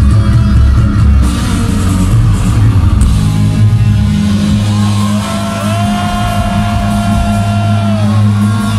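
Melodic death metal band playing live through a festival PA: distorted guitars, bass and drums, dense and heavy at first. About halfway in the sound thins out, and long held high notes with slight bends ring over a steady low chord.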